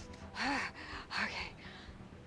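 A woman's sharp gasp about half a second in, with a short voiced catch, followed by a second, breathier gasp a little after a second.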